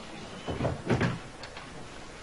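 A door opening and closing: two short knocks about half a second apart, then a faint click.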